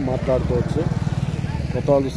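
A nearby motor vehicle engine running with a fast, even low throb, with men's voices talking over it at the start and near the end.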